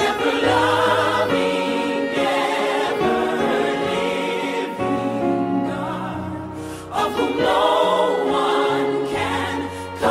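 Background gospel music: a choir singing a slow hymn in long held notes over sustained low chords, with a new phrase swelling in about seven seconds in.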